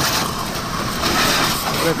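Pressure washer spraying a jet of water onto a scooter's rear wheel and body panels, a steady hiss of spray with the washer's motor running, as the bodywork is rinsed of grit before soaping.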